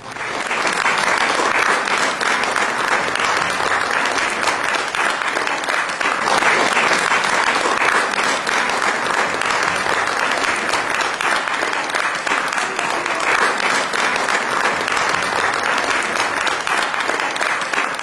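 Concert audience applauding. The applause breaks out suddenly and holds steady and dense.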